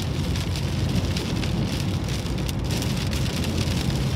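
Rain on a car's windscreen and roof, heard from inside the car as it drives on a wet road, over a steady low rumble of the car.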